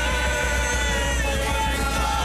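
Cádiz carnival comparsa singing a sustained chord in close harmony, the voices held with vibrato over Spanish guitar accompaniment and a steady bass.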